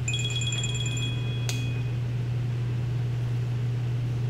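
A short high-pitched chime, ringing and pulsing rapidly for about two seconds, with a click partway through, over a steady low hum.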